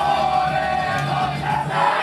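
Live idol-pop song playing through the venue's speakers while the audience shouts a chant in unison over it.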